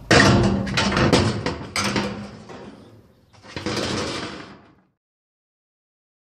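Knocks, clatter and scraping from something being handled and moved, in two bursts, cutting off abruptly after about five seconds.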